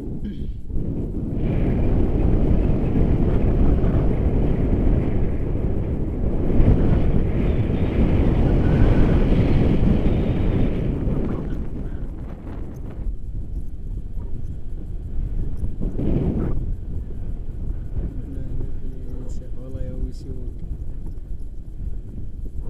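Wind buffeting the camera's microphone in paraglider flight, a steady low rumble that is heaviest for the first half and then eases, with a brief gust about two-thirds of the way through.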